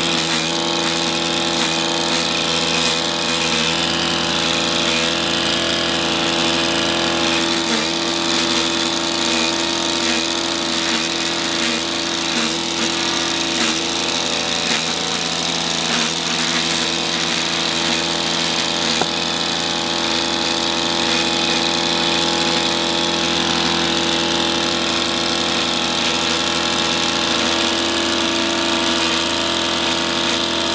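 Stihl KM130 combi-engine, a small 4-MIX petrol engine, running at steady full speed with a string-trimmer head. Its twisted Tornado alucut line whirs as it cuts grass along a paving-slab edge, with a few short clicks along the way.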